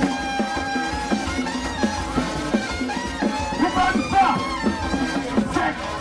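Live Haitian rara band music: a steady drum beat of about two strokes a second under held tones and group chanting voices.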